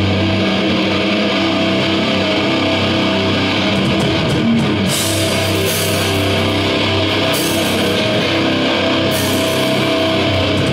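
Hardcore band playing live: loud distorted electric guitar and drums, with bright cymbal washes coming in about five seconds in and again near the end.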